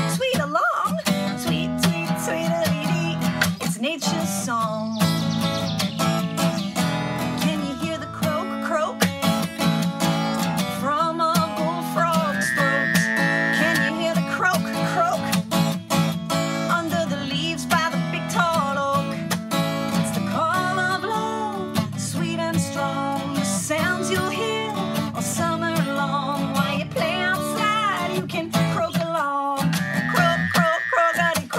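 Acoustic guitar strummed steadily while a woman sings a children's song over it.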